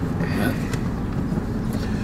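Steady low hum of a car's engine and running gear heard from inside the cabin.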